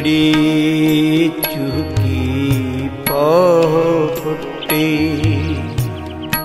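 Sikh shabad kirtan music without words: sustained reedy melody notes with a wavering, ornamented run in the middle, over tabla strokes.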